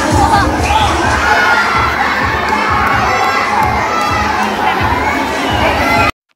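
A crowd of children shouting and cheering, many voices at once, in excitement at a costumed dinosaur walking in front of them.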